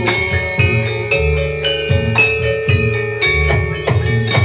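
Javanese gamelan ensemble playing jathilan dance music: metal keyed percussion ringing in sustained tones over regular drum strokes.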